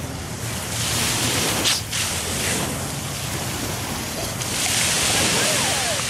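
Small surf washing onto a sandy shore, the wash swelling twice and strongest near the end, with wind rumbling on the microphone.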